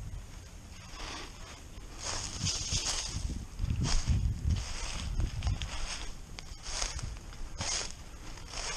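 Footsteps crunching through a thick layer of dry fallen leaves at a walking pace, about one step a second.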